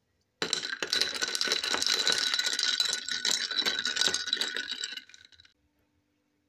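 Ice cubes rattling and clinking against the inside of a glass of iced coffee, a dense run of clinks with a faint ringing of the glass, lasting about four and a half seconds and fading out near the end.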